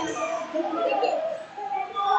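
Indistinct voices calling out in a large gym hall, with no clear words.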